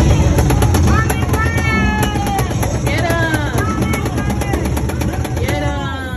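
Arcade light-gun shooter cabinet playing game audio: rapid, evenly spaced gunfire from the mounted gun, with several falling electronic sweeps over a heavy low rumble and game music.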